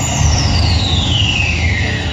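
A single long falling tone, sliding steadily from very high to mid pitch over about two seconds, over a dense low rumble: a sweep effect in the recorded dance-drama soundtrack, between two passages of music.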